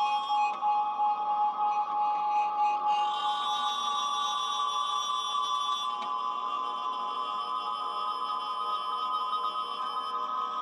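Drone music played on guitars: layered, steady held tones ringing high, with no beat and no bass, the upper layers shifting a couple of times.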